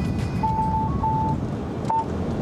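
A mobile phone ringing: short electronic beeping notes, mostly on one pitch with a brief higher note between them. Underneath is the steady engine and road noise of a Mercedes van driving.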